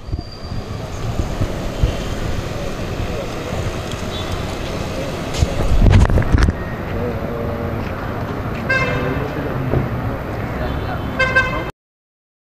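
Street ambience of a crowd talking among themselves over passing traffic, with a louder low rumble about halfway through. A vehicle horn toots twice, once a little past two thirds of the way in and again near the end.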